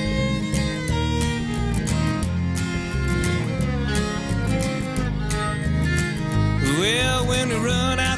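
Instrumental break in a country song: fiddle and guitar over bass and a steady beat. A wavering, bending lead line comes in near the end.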